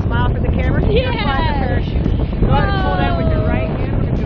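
Rushing air of a skydive buffeting the microphone in a heavy, steady rumble, with a person's wordless whoops over it, twice, each falling in pitch.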